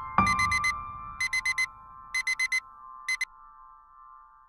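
Digital alarm beeping in quick bursts of four, about a second apart, cutting off partway through the last burst. A low struck note rings out underneath and fades.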